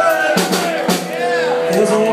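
Live band music played loud in a club room, with drum and cymbal hits under pitched instrument lines and voices from the crowd.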